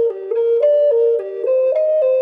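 Native American flute in G minor playing a quick run of connected notes, cycling up and down through the three pitches of a chord, about three notes a second.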